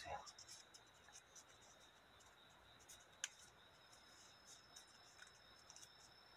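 Faint crinkling and ticking of coloured origami paper being creased and folded by hand, with one sharper click about three seconds in.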